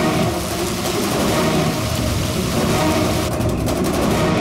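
Steady hiss of poison gas escaping, a drama sound effect over a low droning underscore; the hiss thins near the end.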